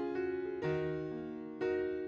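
Background music: soft keyboard chords, a new one struck about once a second and fading away.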